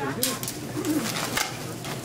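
Grocery checkout counter: items and bags rustle and knock as they are handled at the till, with two sharper rustles, one about half a second in and one about a second and a half in. An indistinct low voice murmurs over it.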